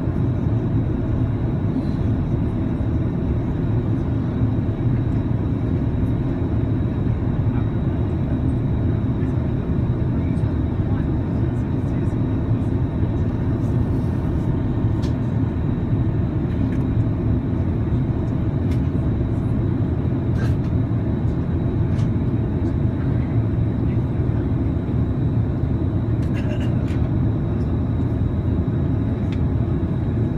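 Airliner cabin noise during descent: the steady low drone of the jet engines and airflow heard from inside the passenger cabin, with a faint steady high whine above it.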